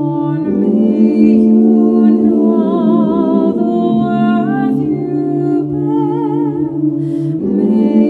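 A woman's voice singing long, held, wordless notes a cappella, with a marked vibrato on the sustained tones. The pitch changes twice, at about half a second and about four and a half seconds in, and moves again near the end.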